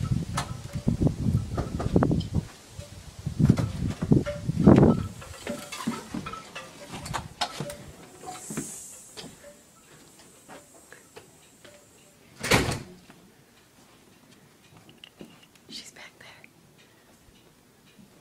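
A house door being worked as someone slips inside quietly. Loud rustling and handling noise over the first few seconds gives way to faint scattered ticks, with one sharp door clunk a little past the middle.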